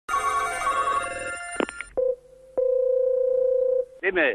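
Telephone sounds: an electronic ringing of several tones for about two seconds, a few clicks, then a single steady tone on the phone line from a little past halfway until just before the end.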